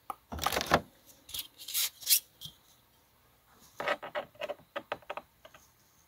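Handling noise as a steel ruler is picked up and stood on the tabletop beside a small plastic figure: two brief scrapes, then a quick run of light clicks and taps.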